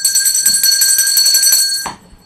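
Electronic alarm-bell sound effect: a loud, high ring made of several steady tones with a fast flutter. It cuts off sharply just before two seconds, leaving a faint ringing tail.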